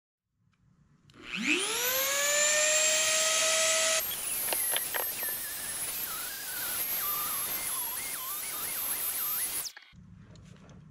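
Handheld rotary tool in a circle-cutting jig winding up to speed with a rising whine about a second in. After a break it is routing a sound hole in a wooden guitar top, its pitch wavering as the bit cuts. It stops abruptly just before the end.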